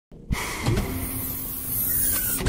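An audio-drama sound effect of a sci-fi reactor coming back on line. It is a sudden, loud hissing rush with a steady hum underneath.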